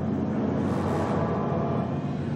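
A steady rushing torrent of liquid surging out and flooding across a floor, a film sound effect, mixed with ominous music.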